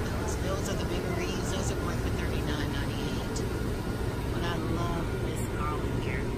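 A loud, steady low rumble of machinery noise, with faint voices in the background.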